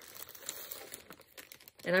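Clear plastic wrap on a rolled poster crinkling faintly as fingers handle it, with a few small crackles.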